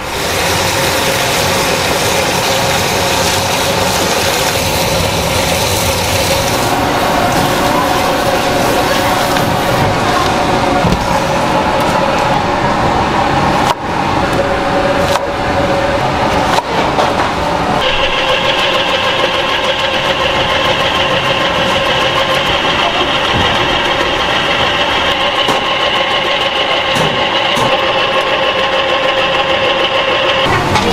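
A steady mechanical hum runs throughout. About two-thirds of the way in, an electric vegetable slicer starts running with a steady, higher whine as Korean zucchini (aehobak) is fed in and sliced.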